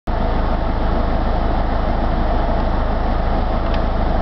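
Steady low rumble of a car running, heard from inside the cabin, with a couple of faint clicks near the end.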